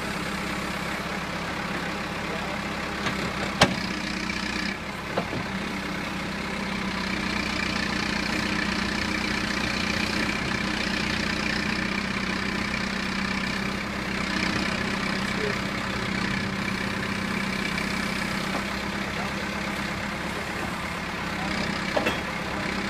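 John Deere 310D backhoe's four-cylinder diesel engine running steadily while the backhoe digs, swelling slightly for a few seconds in the middle. A single sharp click comes about three and a half seconds in.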